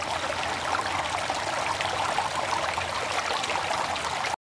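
Running water: a steady stream flowing and trickling, even in level throughout.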